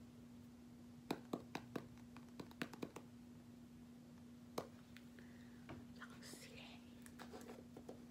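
Small plastic hair-wax jar being handled with long fingernails: a quick run of about eight sharp clicks starting about a second in and a single click midway. Softer rustling near the end, over a steady low hum.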